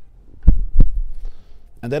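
Two dull low thumps about a third of a second apart, loud and close to the microphone.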